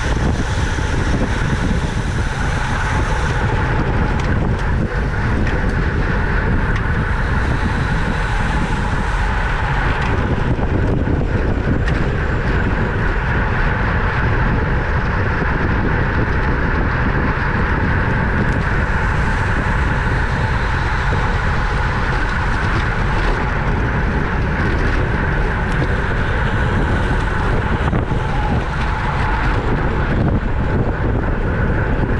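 Steady wind rush over the microphone of a camera on a road bike racing at 25 to 30 mph, mixed with the road noise of the tyres.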